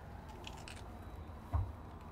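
Faint handling and rustling, then one soft low thump about a second and a half in, as a blanket-wrapped bundle is laid into the open baby box.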